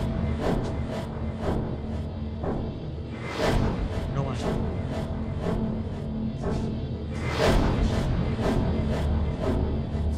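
Suspenseful horror-style background score: a steady low drone under short pulses about twice a second, with a larger swell about every four seconds.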